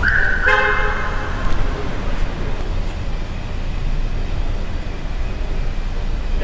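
A car horn toots for about a second and a half at the start, sounding in a parking garage, followed by a steady low rumble of car engine noise.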